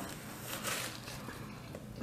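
Faint mouth sounds of eating, chewing and finger-licking, with a short noisy burst a little over half a second in.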